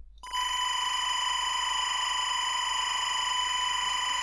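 SMPTE linear timecode played back from a computer audio file: a steady, unchanging buzzing tone that starts a moment in. The mixed music beneath it can barely be heard.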